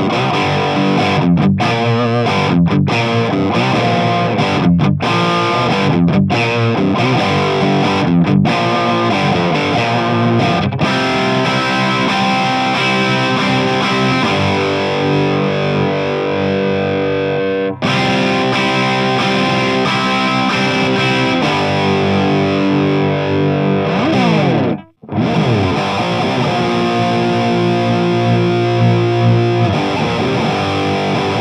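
Electric guitar through an overdriven amp playing a dirty rhythm part: short, stop-start muted strokes at first, then held, ringing chords. It breaks off briefly about three-quarters of the way through and starts again. This is the same part played first with an 8k-ohm pickup and then with a 54k-ohm high-output humbucker, which sounds darker and more compressed.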